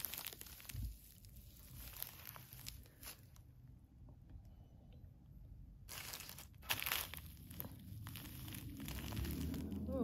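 Thin plastic sheeting over carpet crinkling under a hand pressing on it, in a few brief bursts a little past the middle, otherwise faint.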